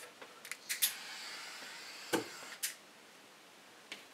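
Butane torch flame, started with a few sharp clicks and hissing steadily for about a second, with a sharp pop about two seconds in as the heated lead glyoximate powder goes off, leaving a black scorch.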